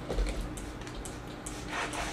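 Quiet handling sounds of damp porridge oats being squeezed and stirred by hand in a plastic tub, with water squirted in from a small squeeze bottle.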